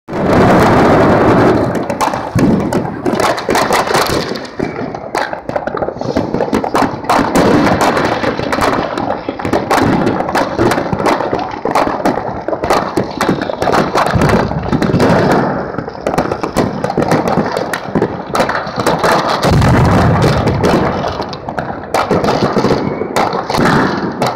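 New Year's Eve fireworks and firecrackers going off all around in a dense, unbroken barrage of bangs and crackling, with a deeper booming spell a little before the end.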